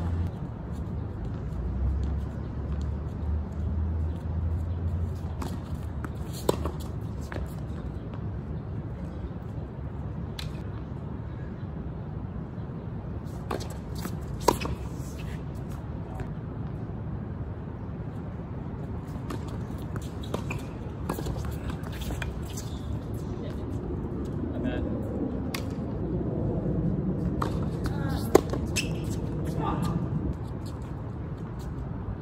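Tennis balls struck by rackets during doubles points: sharp single pops spaced several seconds apart, the loudest about halfway through and near the end, over a steady low hum.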